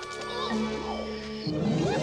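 Film score music holding a steady chord; about one and a half seconds in, a creature's roar breaks in over it.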